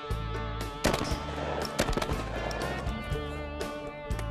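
Several shotgun shots fired at clay targets, some in quick succession, over steady background music.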